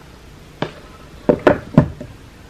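Four short knocks and taps from unboxing items being handled and set down on a hard surface: one about half a second in, then three in quick succession near the end.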